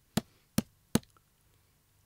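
Two short, sharp clicks about three quarters of a second apart, in a pause between spoken phrases.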